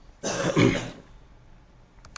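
A man clearing his throat once, a short rough burst of under a second starting about a quarter second in.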